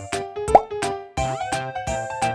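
Upbeat background music with a steady beat. A short, sharp plop cuts in about half a second in, and a rising sliding tone follows a little past one second.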